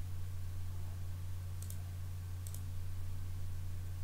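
Two computer mouse clicks a little under a second apart, over a steady low hum.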